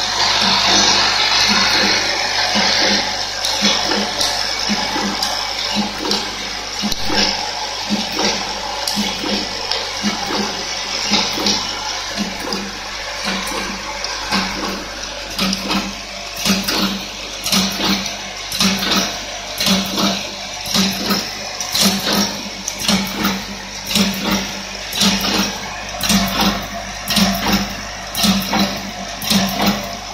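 Automatic nozzle packing machine running: a vibratory bowl feeder hums under a steady hiss, and from about halfway through the sealing and cutting mechanism clacks in a regular rhythm a little more than once a second.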